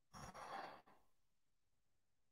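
A man's short audible sigh, an exhalation lasting under a second.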